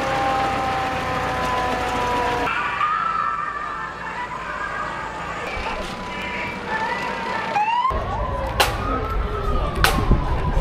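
Fire engine sirens wailing as fire trucks drive slowly past, in slow rises and falls of pitch, with a rising sweep about eight seconds in. The sound changes abruptly twice.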